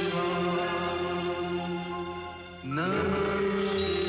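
Devotional chanted mantra over music, sung in long held phrases. Each phrase slides up into a sustained note, and a new phrase begins a little before three seconds in.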